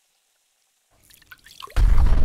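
Cartoon sound effects: a few small dripping, bubbling blips from a chemistry flask, then a sudden loud explosion boom near the end.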